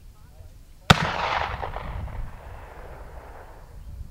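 A black-powder muzzleloading rifle fired once about a second in, a single sharp report that trails off over about two seconds.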